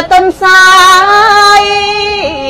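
A woman chanting Khmer smot, the Buddhist verse chant, solo: a few short broken notes, then one long held note with a slight wavering.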